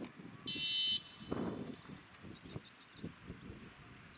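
A loud, high-pitched buzzer-like beep lasting about half a second near the start. Around it are the scuffing and knocking of Ongole bulls' hooves on gravel and faint high chirps of small birds.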